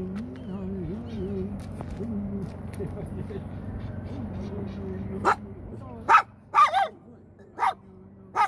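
A man's low, drawn-out chanting voice, then a dog barking several times in short, sharp barks over the last three seconds.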